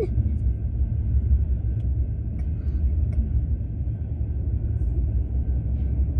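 Low, steady rumble of a double-stack intermodal freight train rolling through a level crossing, heard from inside a car stopped at the crossing.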